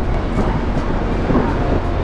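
Steady low drone of a riverboat's engine under a rushing hiss of wind and water.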